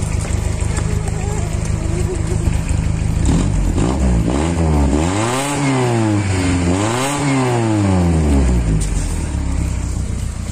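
Ford Laser sedan's engine idling, then revved twice, its pitch rising and falling each time before settling back to idle near the end. It is heard through an exhaust whose front resonator has snapped off, which makes it very noisy.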